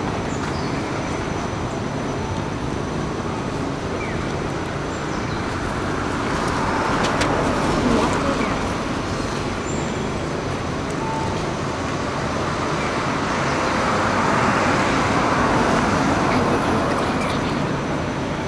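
Steady street traffic noise, swelling twice as vehicles pass, about seven to nine seconds in and again around fourteen to seventeen seconds.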